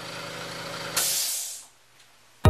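California Air Tools CAT-1P1060S oil-free quiet air compressor running with a low steady hum, then shut off about a second in: a sharp burst of hissing air from the unloader valve venting, fading quickly as the motor stops.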